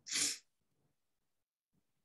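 A single short, sharp burst of breath from a person, about a third of a second long, just after the start.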